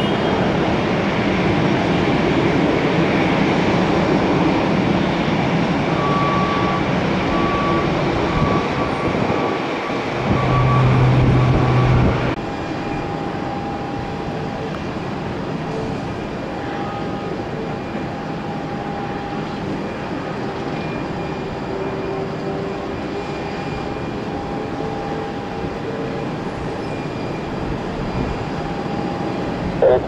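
Jet engines of a Boeing 737 on the runway running steadily, with a louder low hum just before the sound changes abruptly about twelve seconds in. After that, the quieter, steady engine noise of a Boeing 737 MAX 8 on final approach, with faint held and slowly falling tones.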